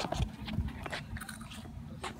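Low rumble and a few faint knocks from a handheld phone being swung about as it is moved.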